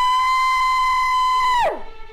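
A man's long, high scream held on one pitch, then dropping off sharply near the end, over a faint sustained music drone.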